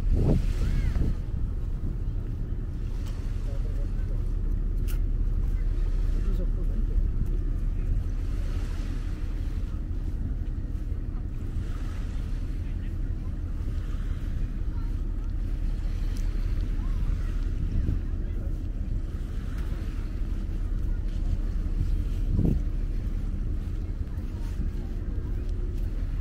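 Wind rumbling steadily on a small handheld camera's microphone, a low, constant buffeting.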